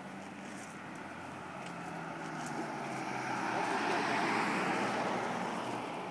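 A vehicle passing on a nearby road: a broad rush of road noise that swells to a peak about four seconds in and then fades.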